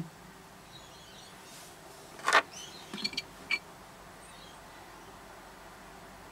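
Small pieces of rough opal being handled and clicked against each other: one sharp click about two seconds in, then three lighter clicks within the next second or so, over a low hiss.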